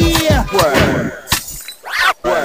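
Vinyl scratching on a Technics SL-1200MK2 turntable over a hip hop beat: the record pushed back and forth to make quick sweeps up and down in pitch, with sharp drum hits. The sound dips briefly near the end before a rising sweep.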